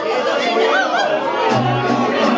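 Party guests chattering and calling out over mariachi music. A deep bass note comes in about a second and a half in.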